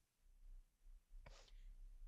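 Near silence in a pause of a stage monologue, broken once, just past halfway, by a short audible breath from the actress.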